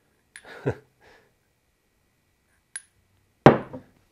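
Metal clinks and knocks of short copper tubes and a neodymium magnet ball being handled and set down on the workbench: a small click and dull knock early on, a sharp ping with a brief high ring near three seconds, and a louder knock with a short ring just before the end.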